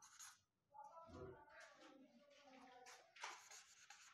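Faint marker strokes on a whiteboard, a few short scratchy sounds in near silence.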